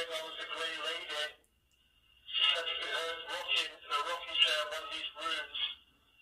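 A 'black box' ghost-box device playing garbled, radio-like voice fragments in two stretches, the second about two seconds in, over a steady thin high whine.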